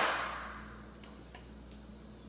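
A few faint, light clicks of kitchen utensils and a glass measuring cup being handled, over a low steady background hum.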